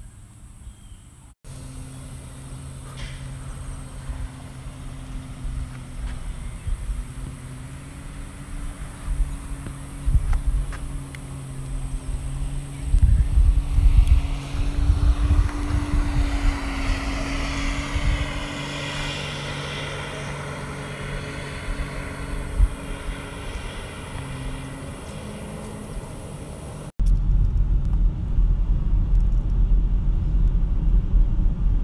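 A steady low motor hum with gusts of wind on the microphone. Near the end it cuts to the louder, steady rumble of a car driving on a dirt road, heard from inside the cabin.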